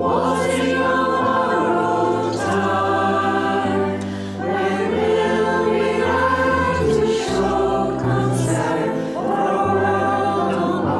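A choir singing a song in sustained chords, the sung words' consonants coming through every second or two over held low notes.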